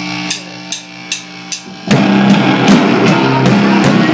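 Drummer counting in with four stick clicks about 0.4 s apart, then the full rock band comes in loud with drum kit, bass and electric guitars.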